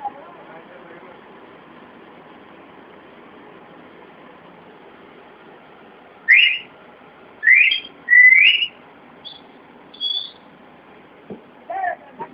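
A series of five loud whistled notes beginning about six seconds in: three upward slides, then two shorter, higher notes, over steady background noise.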